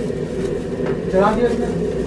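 Steady low machine drone of kitchen equipment, with a brief voice about a second in.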